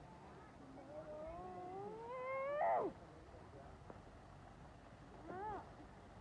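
An animal calling: one long drawn-out call that rises steadily in pitch for about two seconds and breaks off sharply, then a short call near the end.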